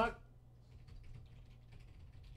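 Computer keyboard typing: a run of faint, quick key clicks starting about half a second in.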